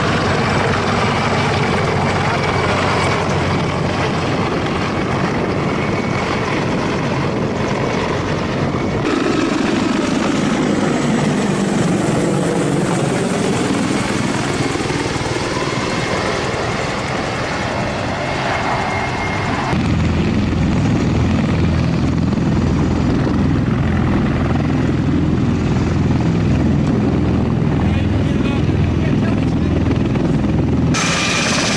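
Military helicopter rotors and turbine engines running loudly. Around the middle, one passes overhead and its sound sweeps in pitch. From about two-thirds through, a closer, heavier rhythmic rotor beat takes over.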